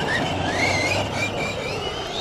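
Losi Lasernut RC truck's electric motor whining as it drives on dirt, the high whine rising in pitch about halfway through as the throttle opens, over a steady rush of tyre and track noise.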